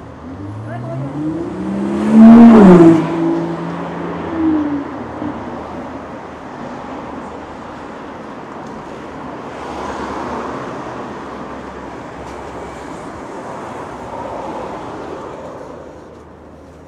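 A car accelerating past on the street, its engine note rising in pitch, then dropping sharply as it goes by, loudest about two to three seconds in. Softer swells of passing traffic follow later.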